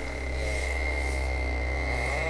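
Gigahertz Solutions HF35C radio-frequency meter's audio output giving a steady buzz with a high whistle over it, the sound of the pulsed microwave radiation it is picking up.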